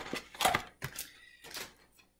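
Loose plastic LEGO bricks clicking against one another and the tabletop a few times, with the strongest clatter about half a second in, then thinning out.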